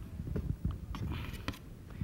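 Palette knife working oil paint: a few light taps and knocks of the knife against the palette and canvas, over low thudding handling noise.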